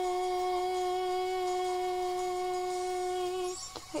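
A singer's voice holding one long, steady note without accompaniment, the final sustained note of the song; it stops about three and a half seconds in.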